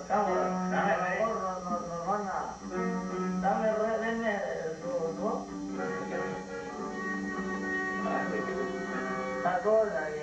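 Norteño music on button accordion and bajo sexto, the accordion holding steady chords over plucked strings. A man's voice comes in over it at the start and again near the end.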